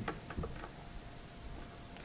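A few faint clicks or taps in the first half second, then quiet room tone.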